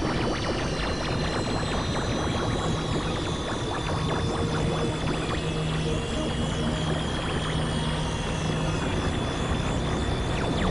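Dense layered experimental noise and drone music. A held low hum and a high tone that sinks slowly in pitch run over a steady crackling, clicking wash.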